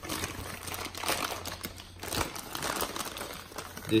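Plastic packaging bag crinkling and rustling in irregular bursts as it is opened by hand and the spacer tubing is pulled out.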